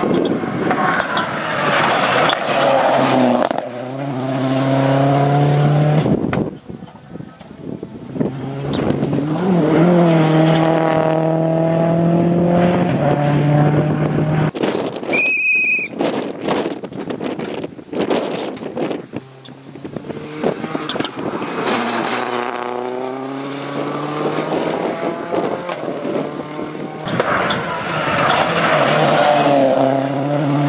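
Ford Focus WRC rally car's turbocharged four-cylinder engine at full throttle, rising in pitch through each gear and dropping at every upshift, several times over, as the car charges past. A short high whistle sounds about halfway through.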